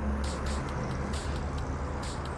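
Street traffic: a motor vehicle's engine droning past over a low steady rumble, its hum dropping lower about a third of the way in, with light clicks above.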